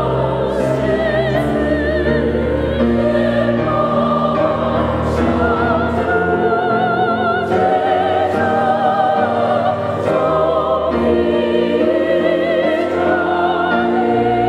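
Choir singing a hymn, the voices held with marked vibrato over sustained chords, at a steady full level.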